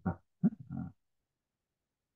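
A man's voice: the tail end of a spoken word, then a short, low, grunt-like vocal sound about half a second in, after which everything drops to silence.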